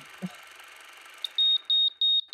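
High-pitched electronic alarm beeping: a single piercing tone switching on and off in quick pulses, about three a second, starting after a click near the end.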